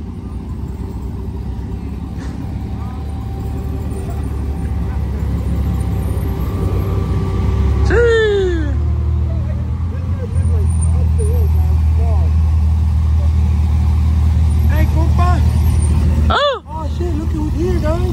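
Car engine running at low revs, a deep steady rumble that builds and gets louder about ten seconds in, with people's voices over it, one falling call about eight seconds in and more near the end.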